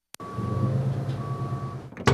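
Box truck engine running with its reversing alarm beeping twice, each beep about half a second long. The sound starts with a click and cuts off abruptly near the end.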